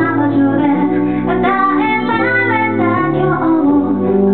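A woman singing a slow Japanese song, accompanying herself on a piano-voiced electric keyboard with held low chords under the melody.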